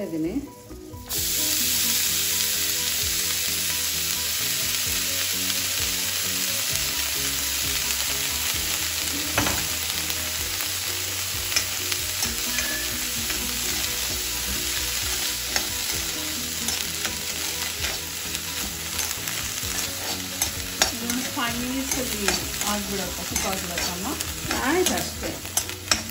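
Chopped doddapatre (Mexican mint) leaves hitting hot ghee in a kadai about a second in, then frying with a loud, steady sizzle. A steel ladle stirs them, clicking and scraping against the pan.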